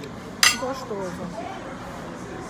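A single sharp clink of a metal fork against a ceramic dish, about half a second in.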